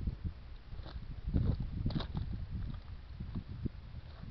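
Footsteps on muddy ground, a few sharper steps about one and two seconds in, over a low, uneven rumble.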